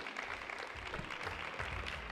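Light applause from a small audience, a steady patter of many scattered claps.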